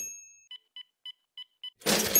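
Five short electronic beeps in a quick, slightly uneven run. A loud rush of noise fades away in the first half second, and another loud rush comes in near the end.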